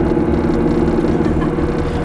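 Tour coach's engine and road noise heard inside the passenger cabin while driving: a steady low drone with no sudden changes.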